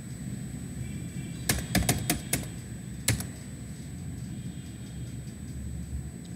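Computer keyboard being typed on: five quick keystrokes, then two more about a second later, over a steady low hum.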